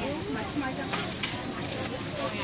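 A steady hissing noise with faint voices talking in the background.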